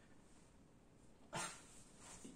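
Near silence: room tone, broken about a second and a half in by one brief syllable of a man's voice.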